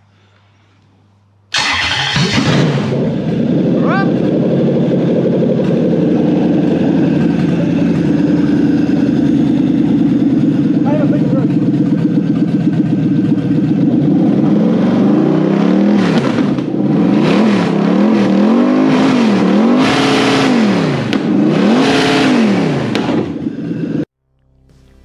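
Toyota 1UZ-FE 4.0-litre V8 on a bench test rig, running on a Link aftermarket ECU, starts about a second and a half in and settles into a steady idle. In the last third it is blipped up and down about five times, each rev rising and falling smoothly.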